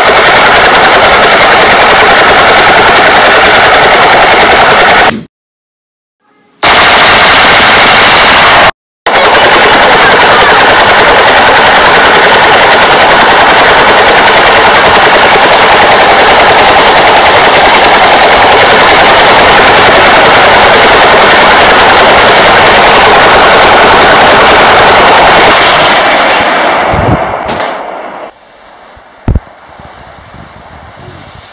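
Very loud, distorted machine-gun fire, a continuous rapid rattle. It cuts out for over a second about five seconds in and again briefly just before nine seconds, then fades away over the last few seconds.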